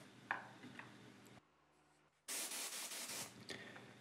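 Air-fed gravity-cup spray gun triggered briefly: a hiss of air and paint about a second long, starting a little past two seconds in, as the gun is tested and set up before painting. A faint click comes about a third of a second in.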